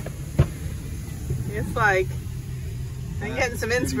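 Brief snatches of people talking over a steady low rumble, with one sharp knock about half a second in.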